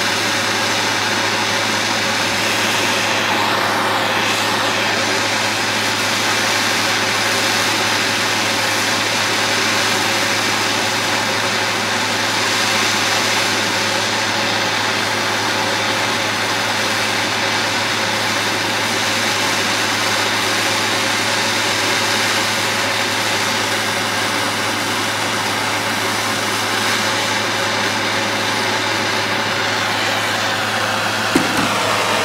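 Handheld propane torch burning steadily: a continuous, even hiss of the flame that does not change.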